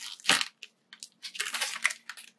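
Clear cellophane packaging sleeve crinkling in the hands as it is handled and picked at to open it: one short crackle about a quarter second in, then a longer run of crackles in the second half.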